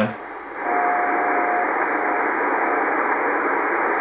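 A shortwave receiver in CW mode plays band hiss that comes up about half a second in, then the steady Morse tone of the NCDXF/IARU beacon from South Africa (ZS6DN) on 28.200 MHz. The tone is one strong dash about a second long, followed by two fainter, shorter dashes fading into the hiss. These are the beacon's long carrier dashes sent at stepped-down transmit power.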